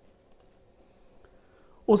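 A close pair of quick, faint computer mouse clicks about a third of a second in, over quiet room tone, as a menu option is selected; a voice begins right at the end.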